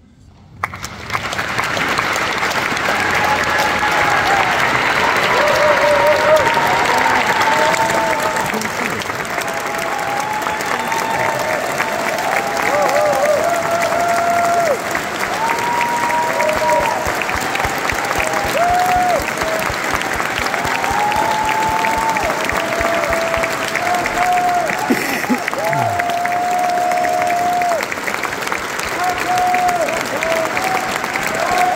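Audience applauding and cheering, breaking out about half a second in and keeping up steadily, with many whoops and calls rising above the clapping.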